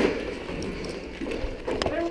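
Rustle of gear and shuffling boots as a team pushes out through a doorway, with faint distant voices and a couple of light clicks near the end.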